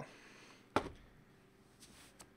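A single short knock from a hand handling a cardboard trading-card box, with a faint tick near the end; otherwise quiet room tone.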